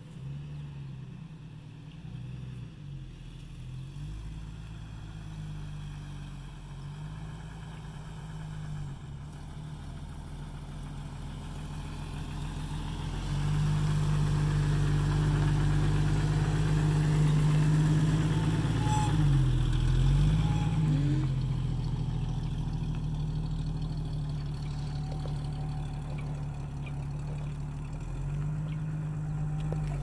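A 1993 Jeep Wrangler's 4.0L straight-six engine idling steadily, heard from a distance and then louder close up. Its note dips briefly and recovers about two-thirds of the way through.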